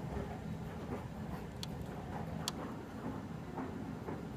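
Sharp clicks of fingers pressing the keys on an electronic balance's keypad, two clear ones about a second apart near the middle, over a steady low hum.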